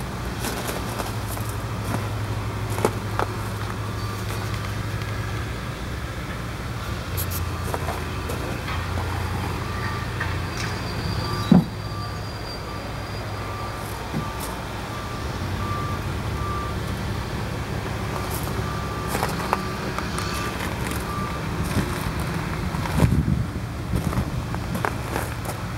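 An engine running somewhere in the yard, heard as a steady low hum that shifts a little in pitch, with a reversing beeper sounding repeatedly and faintly through the middle. A few clicks, and one sharp knock about halfway through.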